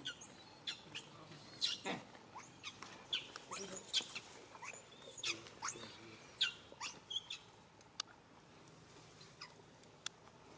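A young macaque giving a rapid string of short, high-pitched squeaks that thin out and stop after about seven and a half seconds. A single sharp click comes shortly after.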